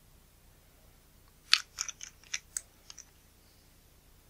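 A quick run of about seven crisp, sharp crackles over a second and a half, the first the loudest, from hands getting a fresh lens-cleaning cloth ready on the workbench.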